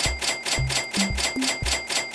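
Electronic background music with a steady beat and bass, overlaid by a sound effect of rapid ticking, about ten ticks a second with bright ringing tones.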